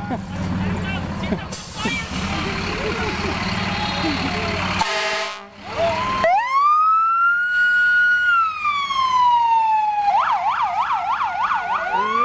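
Fire truck siren. It comes in about six seconds in after a few seconds of engine rumble and crowd noise. It rises in a wail, holds, and falls slowly, then switches to a fast yelp of about four cycles a second while a second wail rises over it near the end.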